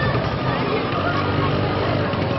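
Busy street ambience: a crowd's voices chattering over the steady running of motor vehicle engines.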